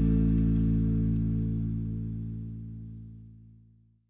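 The final held chord of a rock song, guitar and bass ringing together, slowly fading out to silence by the end.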